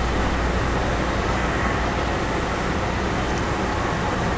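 Steady room noise from fans and ventilation: an even low hum and hiss with a thin, steady high tone.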